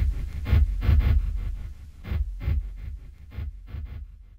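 Hip-hop drum beat playing on its own at the end of the track, kick and snare hits about two to three a second, fading out steadily.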